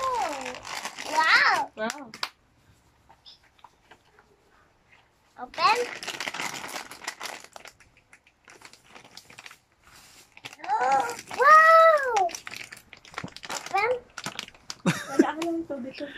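A toddler's plastic snack bag crinkling as he handles and tugs at it, mixed with the child's high-pitched babble and exclamations, including one drawn-out rising-and-falling call about two-thirds of the way through.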